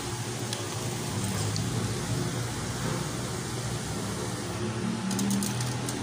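Steady low hum and hiss of room noise, like an air conditioner or fan running, with a few faint crackles near the end.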